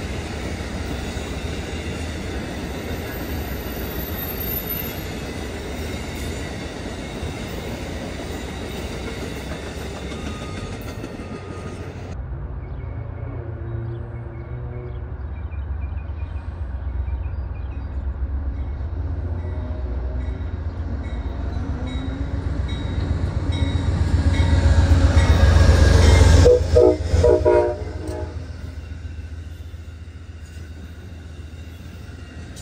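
Amtrak passenger train rolling past on the tracks, its wheels and cars making a steady rumble. Near the end a train horn sounds in a few short blasts, the loudest part, and then the rumble fades.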